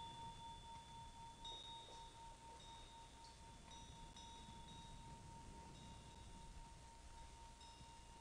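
Faint, lingering ring of a Tibetan vajra bell (ghanta): one steady tone held throughout, with a few soft high tinkles now and then, in otherwise near silence.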